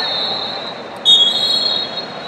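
Wrestling referee whistles: one long, shrill, steady whistle, then two overlapping whistles at slightly different pitches starting about a second in, echoing in a large hall.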